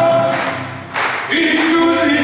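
Several voices singing together in chorus, held notes with a dip in loudness about a second in, in a live quarteada (gaúcho regional) music performance.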